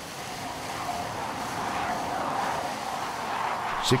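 A-4 Skyhawk jet in flight: a steady rushing engine noise that builds slightly over the first two seconds.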